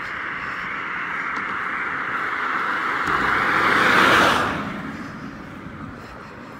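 A car driving past, its tyre and road noise growing louder as it approaches, loudest about four seconds in, then fading away.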